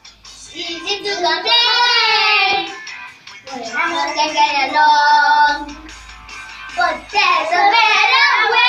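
Children singing an action song together in three sung phrases, with short breaks between them.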